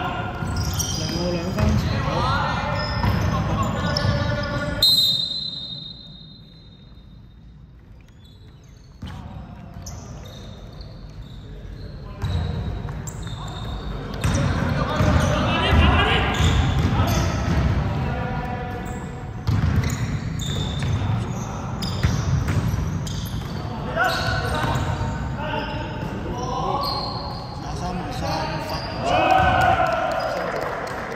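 Basketball bouncing on a hardwood court with shoe squeaks and players' shouts echoing in a large sports hall. About five seconds in there is a short high whistle tone, and the hall goes quieter for a few seconds before play picks up again.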